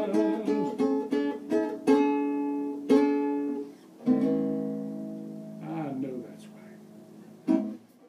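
Nylon-string acoustic guitar playing the closing bars of a blues number: quick picked notes, then a chord about four seconds in that rings and fades, a falling run of notes, and a final short strum near the end.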